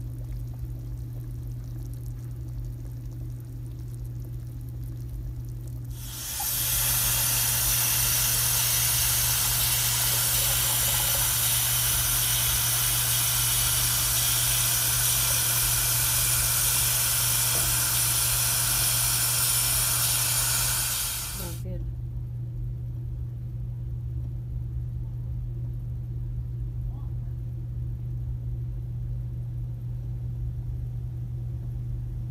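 Kitchen tap running onto rice noodles in a bowl. The water starts about six seconds in, runs steadily for about fifteen seconds, then shuts off suddenly. A steady low hum runs underneath throughout.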